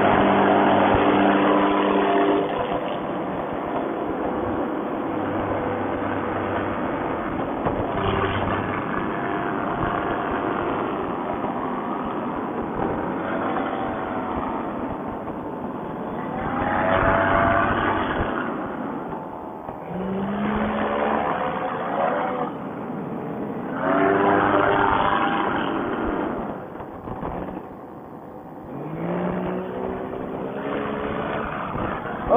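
Paramotor engine and propeller running at high power through a foot-launched takeoff and low flight, its pitch and level rising and falling several times.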